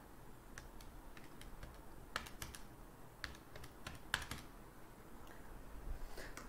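Faint, irregular key clicks: a dozen or so separate taps on small keys, unevenly spaced and bunched in the middle seconds.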